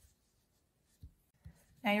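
Faint handling of yarn and crochet pieces between fingers, with two soft knocks about a second and a second and a half in.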